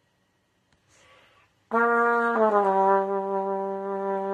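Trumpet played through a French horn mouthpiece on an adapter, giving a deeper, darker tone. A short breath, then a note held briefly that steps down to a lower one, held steadily.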